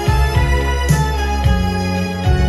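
Vintage Japanese pop song played through a pair of Infinity Modulus bookshelf speakers with a 12-inch subwoofer, heard in the room: held instrumental notes over a deep bass line.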